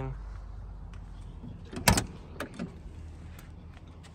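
Door latch of a 1986 Ford Bronco II clicking as the door is opened: one sharp double click about two seconds in, then a few lighter clicks.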